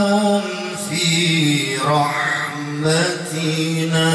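A man's voice reciting the Quran in the melodic, chanted style, drawing out long held notes with slow ornamented turns of pitch.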